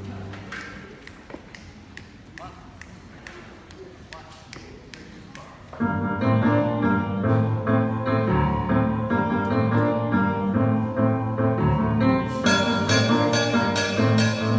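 A jazz big band of saxophones, piano, bass and drum kit: a few quiet seconds with scattered light taps and clicks, then the full band comes in loudly about six seconds in, with cymbals joining about twelve seconds in.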